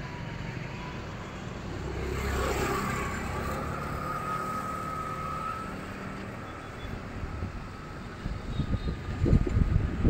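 Road traffic: a motor vehicle engine running steadily nearby, with a faint thin whine in the middle. Low rumbling bumps on the microphone near the end.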